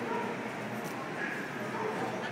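Steady background chatter of a crowd, with short dog yips and barks heard among it.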